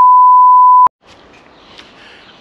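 A loud, steady 1 kHz bleep tone, just under a second long, that starts and cuts off abruptly with a click at each end: an edited-in censor bleep.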